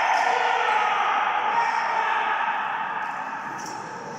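People shouting and cheering at the end of a rally as a point is won, with one long held shout that dies away over about three seconds.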